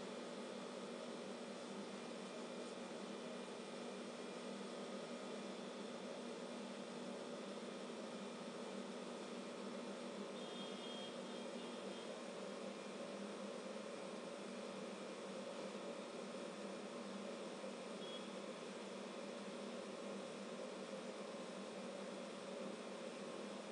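Steady background hiss with a faint low hum, even and unchanging, with no distinct sounds standing out.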